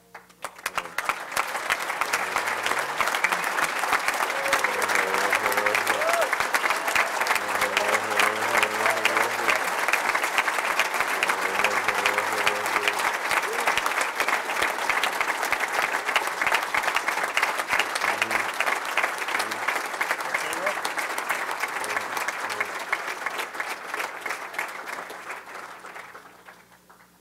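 A room of people applauding: sustained clapping that builds within the first two seconds, holds for about twenty seconds and fades out near the end, with voices calling out among it in the middle.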